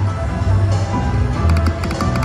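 Video slot machine playing its reel-spin music and sound effects while the reels spin, over a deep, pulsing bass beat, with sharp clicks near the end.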